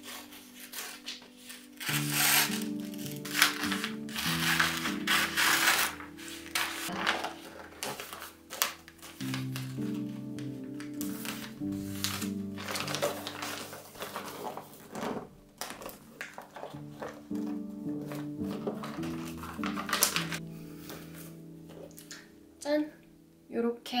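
Wrapping paper crinkling and rustling in irregular bursts as it is folded around a gift box by hand, loudest in the first few seconds, over background music with held chords.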